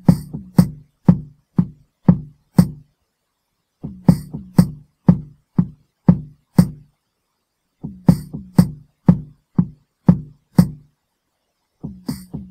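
Software drum instrument (DR-Fusion 2) playing back a programmed beat of kick, snare, tom and hand-clap hits at 120 bpm. The short pattern repeats about every four seconds, with a gap of about a second in each cycle. The result is sparse and choppy; the maker calls it rubbish.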